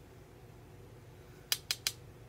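Three quick, sharp taps about a second and a half in, under a fifth of a second apart, as makeup tools are handled, over a faint steady low hum.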